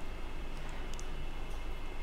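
Faint, steady simmering of a thin salt-and-chili seasoning liquid in a nonstick wok with sea snails in it, with a few small ticks of bubbles popping.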